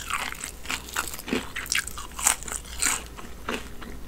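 Close-up chewing of crispy Popeyes fried chicken: a run of irregular crunches from the breaded skin, the loudest pair a little past the middle.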